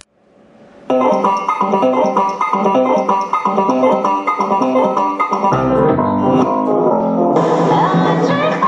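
Background music: after a brief gap, an instrumental track starts about a second in with evenly paced plucked notes, and a bass line joins about halfway through.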